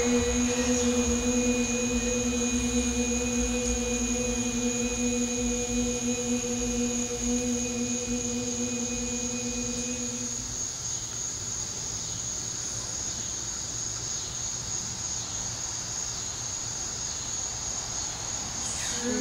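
A woman's voice holding the Qi Gong healing sound "chri", the Six Healing Sounds' sound for the kidneys, as one long steady note that stops about ten seconds in. A steady high insect trill runs behind it throughout.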